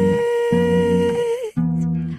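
A woman's singing voice holding one long, steady note over an acoustic bass guitar plucking low notes. The held note slides down slightly and stops about one and a half seconds in, while the bass plays on.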